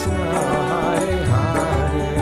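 Devotional mantra chant set to music: a wavering sung melody over a steady low drum beat.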